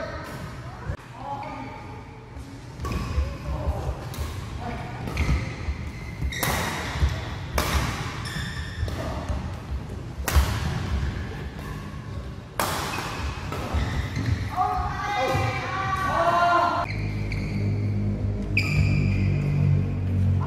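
Badminton rackets striking the shuttlecock during doubles rallies, with several hard, sharp smash hits ringing in a large hall. Players' voices are heard between shots, and music comes in near the end.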